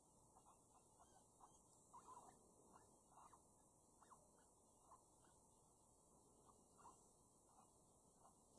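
Near silence with many faint short squeaks scattered irregularly through it, from an electronic predator game caller playing animal call sounds.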